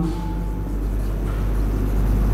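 A steady low rumble of background noise, with the faint scratch of a marker writing on a whiteboard.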